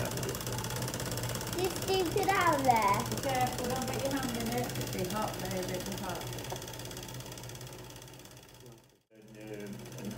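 Miniature spirit-fired brass toy steam engine running steadily with a fast mechanical chatter, under a few voices. The sound fades away and briefly drops out about nine seconds in.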